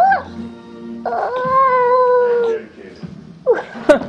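A dog howling: a held howl ends just after the start with an upward rise, a second long, steady howl follows about a second in, and a few short yelps come near the end.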